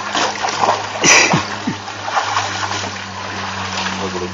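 Shallow water splashing and sloshing as a hand and legs move through it beside a large eel, with the loudest splash about a second in. A steady low hum runs underneath.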